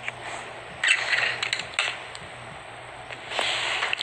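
Toy die-cast cars being handled and moved on a blanket: faint scraping and rustling with a few sharp clicks, in two patches about a second in and near the end, over a low steady hum.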